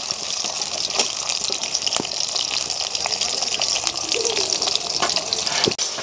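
Potato pieces sizzling steadily as they fry in hot oil in an iron kadhai over a medium flame, with a metal spatula scraping and clicking against the pan a few times.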